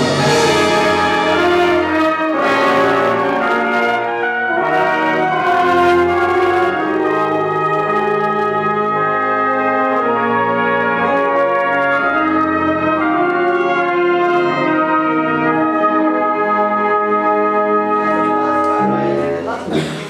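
Concert band playing a passage of held chords and moving lines in rehearsal, which breaks off about nineteen seconds in.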